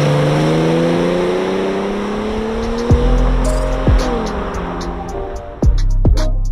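Car engine accelerating, its pitch rising steadily for about four seconds and then dropping away. Electronic music's deep bass hits come in about three seconds in, three times.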